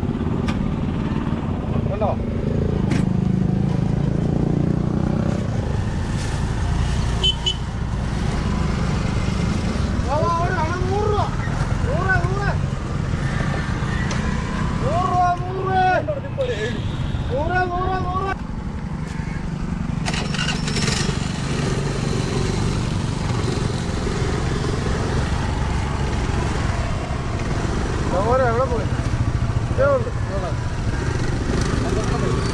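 Motorcycle and scooter engines and passing road traffic close by, a steady low rumble, with people's voices talking now and then.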